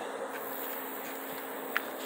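Outdoor background noise with a faint steady hum and one short click near the end.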